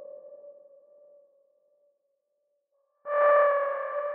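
A single sustained electronic synth note, heard on its own, fading out. About three seconds in, the same pitch sounds again, brighter and louder, and slowly decays.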